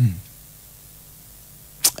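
A woman's voice trailing off in a falling tone, then a short pause with only faint room tone. Near the end comes a brief sharp hiss just before her speech starts again.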